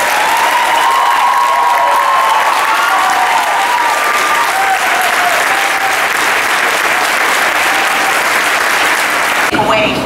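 A small crowd clapping, with a few voices calling out over the applause. The applause cuts off sharply near the end.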